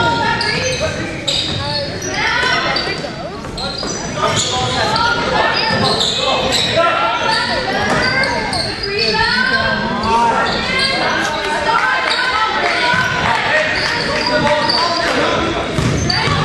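A basketball bouncing on a hardwood gym floor, with sneakers squeaking and players' and spectators' voices calling out, all echoing in a large gymnasium.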